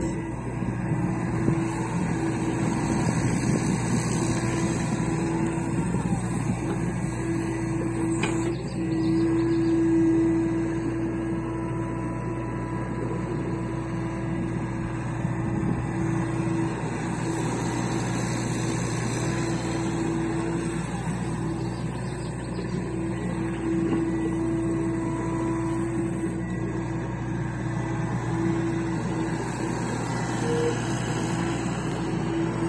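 John Deere compact excavator's diesel engine running steadily as the machine moves and digs soil. A humming tone swells and fades at times over the steady engine sound.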